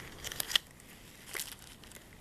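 Crinkling of a foil anti-static bag being handled: a few short crackles in the first half second and one more about a second and a half in.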